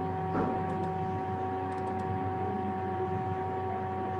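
Steady background hum made of several constant tones over a low hiss, with one brief soft bump about half a second in.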